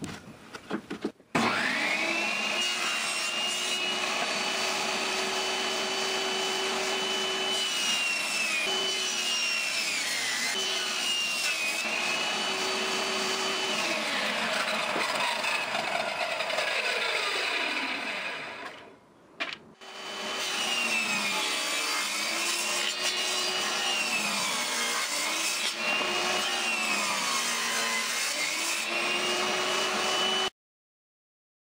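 Table saw motor starting up and running at a steady whine, dipping in pitch several times as the blade cuts through small wood pieces. It winds down to a stop, then is started again and makes a series of further cuts, each one pulling the pitch down briefly.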